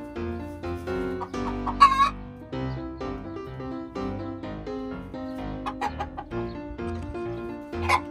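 Chickens calling and clucking, with one loud wavering call about two seconds in and shorter squawks near the end, over background piano music.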